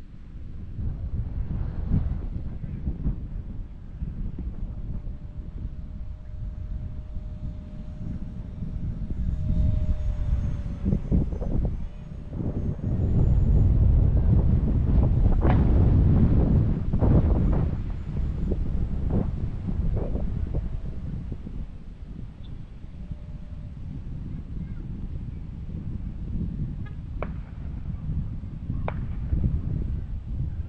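Wind buffeting the microphone, strongest in the middle, over the faint steady whine of an electric ducted fan RC jet flying high overhead, its pitch dipping slightly as it passes.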